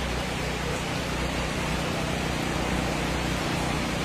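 Heavy rain falling steadily on a tent canopy, an even hiss with no breaks.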